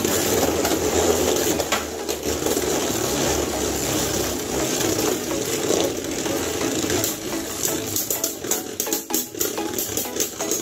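Two Beyblade spinning tops whirring and grinding across a plastic stadium floor. From about two-thirds of the way in, they clack together in quick, repeated hits as they close on each other.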